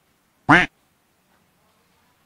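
A single short, loud duck-quack sound effect about half a second in, over faint outdoor ambience.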